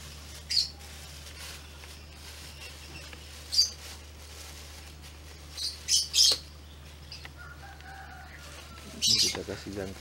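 A few short, high bird chirps, spaced a few seconds apart with a quick cluster of them in the middle, over a steady low hum.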